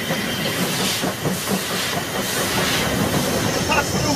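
Steam locomotive running, with steam hissing and the wheels clattering on the rails.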